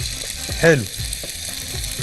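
Steady sizzling as liquid is ladled over rice in a hot pan to moisten it.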